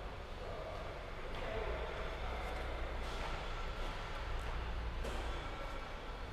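Low, steady background noise with a low hum, which grows stronger twice.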